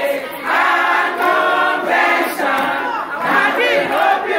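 A group of women singing and chanting together, many voices at once, with a high rising-and-falling cry near the end.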